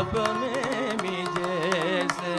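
Carnatic vocal music: a man sings with a rapidly wavering, oscillating pitch on held notes, accompanied by drum strokes.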